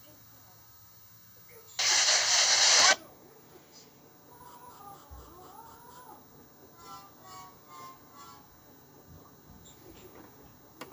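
A loud burst of steady hiss lasting about a second, starting about two seconds in, followed by faint wavering, voice-like sounds.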